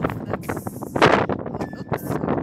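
Wind buffeting the handheld camera's microphone in gusts.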